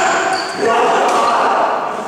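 A man's voice calling out in a large gym hall as a badminton rally ends, with a brief squeak of a court shoe on the wooden floor about half a second in.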